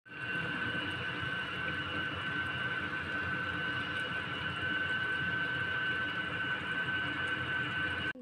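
A small fan motor running steadily: an even whir with a steady high whine over it.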